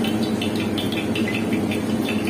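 A thin stream of mustard oil poured into a steel bowl, trickling and splashing softly, under a steady low hum.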